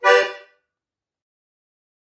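Della Noce diatonic button accordion (organetto) sounding one short final chord of a polka, about half a second long, that dies away into silence.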